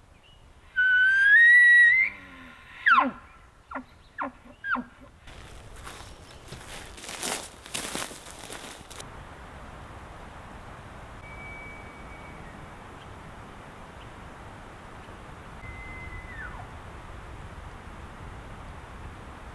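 Bull elk bugling: a loud, close bugle about a second in, a high whistle that climbs, breaks and drops, followed by several short grunting chuckles. Later come two faint, distant bugles, short high whistles, the second falling off at its end.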